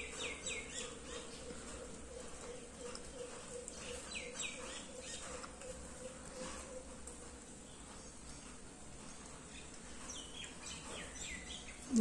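Faint pencil strokes scratching on paper, with bursts of short, falling bird chirps near the start, around four seconds in and near the end, over a steady low hum.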